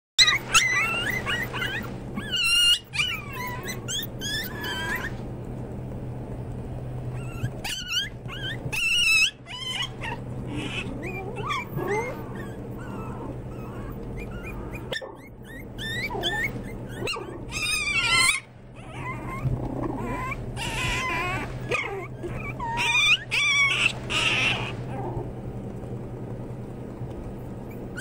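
A litter of small fluffy puppies yipping and whimpering, several high-pitched squeaky cries at a time. The cries come in bursts with short lulls between them, over a steady low hum.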